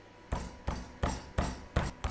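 Chicken breast being pounded flat on a chopping board to about one centimetre thick: five heavy knocks, roughly three a second.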